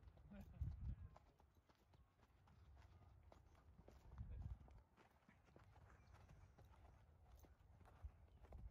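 Faint hoofbeats of three horses walking on a frosty dirt track, uneven footfalls scattered throughout. Two louder low thumps come about a second in and about four seconds in.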